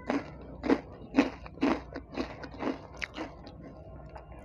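Close-up chewing of a crunchy snack mouthful, about two crisp crunches a second, growing fainter over the last second.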